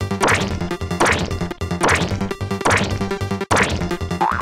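Cartoon whack sound effects: five sharp hits about every 0.8 s, each falling away in pitch, over music with a steady beat.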